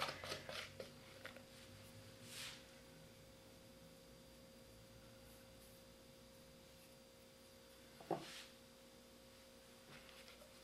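Mostly near silence with a faint steady hum. In the first second or so, a few light scrapes and taps as dough is scraped out of a plastic mixing bowl, then a soft brushing sound and a single knock about eight seconds in.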